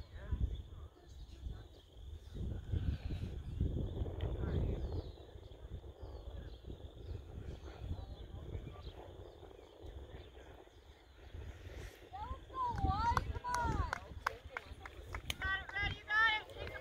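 Wind buffeting the microphone in gusts, with faint distant shouting voices that grow louder and clearer in the last few seconds.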